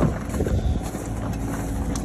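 VW Syncro Vanagon rolling slowly downhill over gravel under gravity on a flat tyre, a steady noisy rumble of tyres on the lane, with wind on the microphone.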